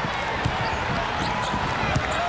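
Arena sound of a live basketball game: a basketball bouncing on the court a few times over a steady crowd din.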